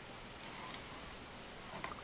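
Faint rubbing of a bone folder smoothing glued paper down flat to press out air bubbles, with a few short scratchy strokes.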